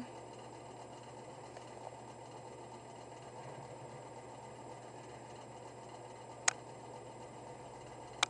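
Low steady hiss and hum of a quiet room, with one short sharp click about six and a half seconds in.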